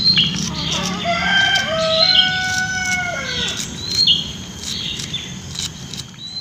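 A rooster crowing once, one long call from about a second in to about three and a half seconds, with short high bird chirps repeating about every two seconds.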